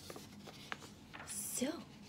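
A sheet of paper rustling as it is handled and put down, with one sharp click partway through. A woman's soft voice starts near the end.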